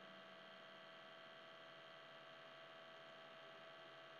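Near silence: a faint, steady electrical hum made of several thin, unchanging tones.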